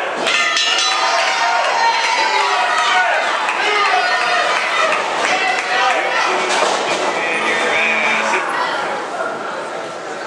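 Voices shouting and calling out in a large echoing hall, mixed with scattered sharp knocks and thuds from wrestlers on a wrestling ring.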